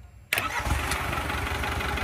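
Isuzu 4KH1 four-cylinder turbodiesel starting for a test run. It fires about a third of a second in and settles into steady running.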